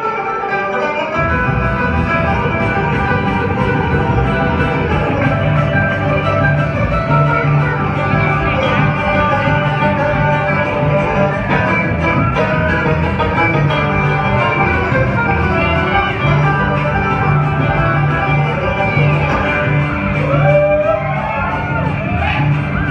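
Live bluegrass instrumental: fast banjo picking over an upright bass, with the bass line coming in about a second in.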